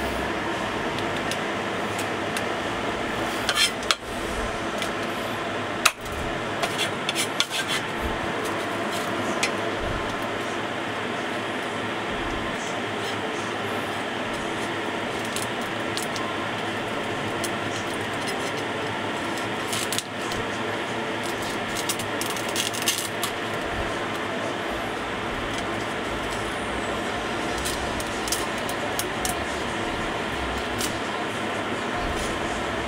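A Chinese cleaver splitting shell-on prawns lengthwise on a wooden chopping board: short scraping, crackling cuts through the shell and a few knocks of the blade on the board, in several brief clusters. Under it runs a steady mechanical hum.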